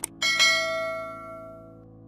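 Subscribe-button animation sound effect: two quick mouse clicks, then a bright notification-bell chime struck twice in quick succession that rings out and fades away.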